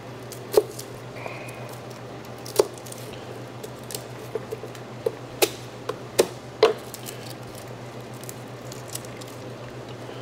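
Chef's knife cutting garlic cloves on a cutting board: a handful of irregularly spaced sharp knocks of the blade striking the board, over a steady low hum.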